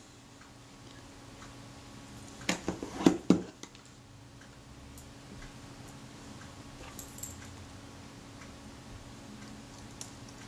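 Sharp metallic clicks and taps from a Retina IIa camera body being handled during reassembly, a quick cluster of them two to three seconds in, then a few faint ticks. A faint steady hum sits under it.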